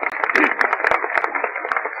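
Crowd applause, a dense patter of many hands clapping, heard through an old narrow-band recording that sounds thin, like old radio. It starts abruptly.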